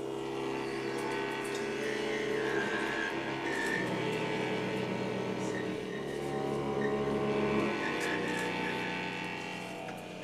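Several wind instruments holding overlapping long tones, forming a deep layered drone with thinner notes above; the low part shifts about four seconds in and again near eight seconds.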